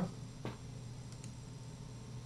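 A faint computer mouse click about half a second in, with a fainter tick a little later, over a low steady room hum.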